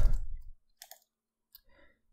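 A man's voice trails off, then a few faint, short clicks come through the near quiet, about a second in and again just past the middle.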